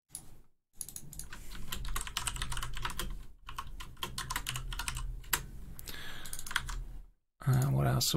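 Typing on a computer keyboard: a quick, irregular run of key clicks with a brief pause partway through.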